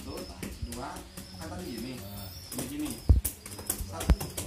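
Doves cooing, low wavering calls repeating through the first few seconds, with a single loud low thump about three seconds in.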